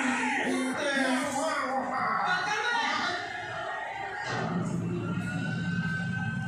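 Speech and music from a film soundtrack played through loudspeakers in a hall. Talking fills the first half; about four seconds in, steady held notes take over.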